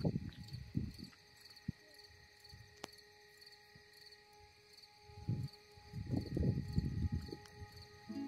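A cricket chirping faintly and steadily, a high-pitched chirp about twice a second, with a few low rumbling thumps near the start and again about five to seven seconds in.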